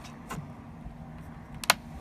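Claw hammer prying a half-driven staple out of a wooden stake: a faint click, then a sharp click near the end as the staple comes free.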